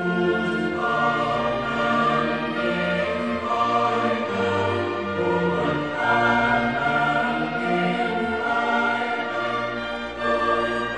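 A church choir singing a sacred choral anthem with orchestral accompaniment. The full choir and orchestra come in loudly right at the start and hold sustained chords throughout.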